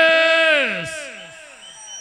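A drawn-out yelled cry (a grito) into the sound system's microphone. It is held on one pitch for almost a second, then slides down in pitch and fades away through a repeating echo effect. A second cry starts just at the end.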